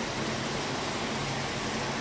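Steady fan-like hum and hiss of running machinery, even throughout with a faint low hum under it.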